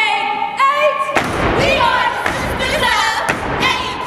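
Several women's voices sing a held phrase together. About a second in, a step routine starts: repeated foot stomps and claps, with chanted voices over the beats.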